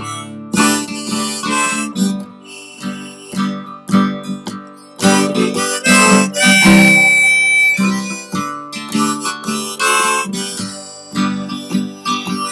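Harmonica in a neck rack playing an instrumental break over a strummed acoustic guitar, with one long held high note about seven seconds in.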